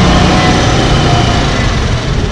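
Small motor scooter engine running steadily at low speed: a continuous low hum under a broad rushing noise.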